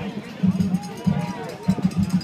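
Indistinct voices of people calling out over outdoor ambience, with no clear words; the sound grows louder near the end.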